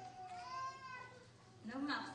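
Speech: a woman reading aloud at a microphone, her voice rising and falling with drawn-out syllables.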